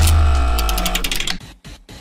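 A short musical transition sting: a deep bass hit under a held, ringing chord that fades away about a second and a half in.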